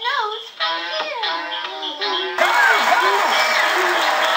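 Animated-film soundtrack of music and cartoon voices. About two and a half seconds in, it cuts abruptly to a louder, hissier passage with a gliding, singing-like voice over it.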